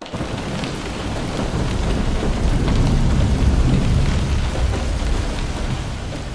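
Steady heavy rain, with a deep rumble running underneath it.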